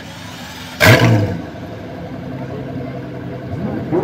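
Pagani Huayra La Monza Lisa's twin-turbo V12 idling through its titanium exhaust, with one short, sudden, loud burst of revs about a second in before it settles back to a steady idle.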